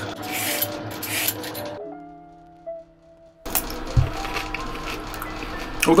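A sharp knife cutting through a raw carrot, with two rasping strokes in the first second or so. After a quiet gap with a few held tones, a single thump comes about four seconds in.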